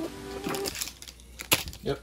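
A drawn-out spoken 'um', then two sharp light taps about a second and a half in as the contents of a cardboard trading-card box are handled and set down.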